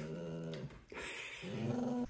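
Pet dog making low grumbling, whining vocalisations while demanding its dinner: a held moan, a short break, then another that rises near the end.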